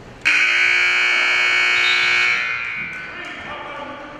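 Gym scoreboard buzzer sounding once for about two seconds, a steady electric horn tone that stops and rings out in the hall. It marks the end of a wrestling period, and the wrestlers break apart.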